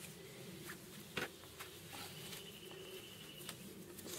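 Faint rustling of thick protective fabric with a few soft clicks, as a homemade wrist guard sewn from chainsaw-trouser cut-offs is pulled onto the forearm.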